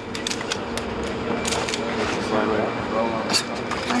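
A steady low mechanical hum from running machinery, with many scattered sharp clicks and faint murmured voices over it.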